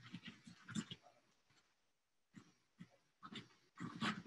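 Faint, scattered rustles and squeaks of shredded cabbage being pressed by hand through a funnel into a glass jar, a cluster in the first second and a few more near the end.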